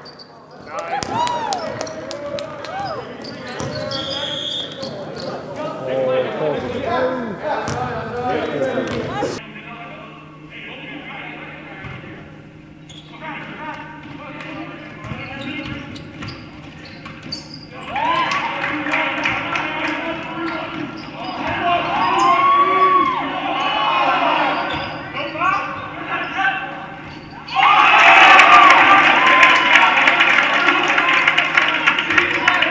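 Basketball game sounds in a gym: the ball bouncing on the hardwood court, shoes squeaking, and players' shouts. About nine seconds in the sound drops and a steady low hum runs underneath. Near the end a sudden, much louder burst of crowd-like noise comes in.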